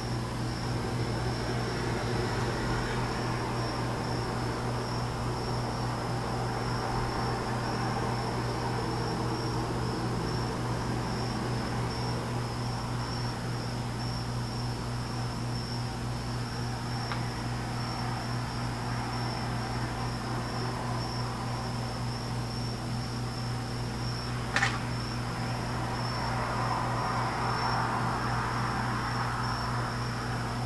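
Steady background noise: a continuous high-pitched tone over a low steady hum, with a single sharp click about 25 seconds in.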